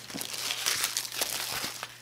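Crinkling and rustling of product packaging as a camera's retail box is handled and opened by hand, a dense run of small crackles that thins out near the end.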